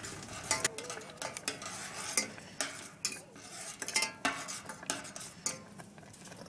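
A metal spoon stirring porridge in a stainless steel saucepan, with irregular clinks and scrapes against the pan's sides and bottom.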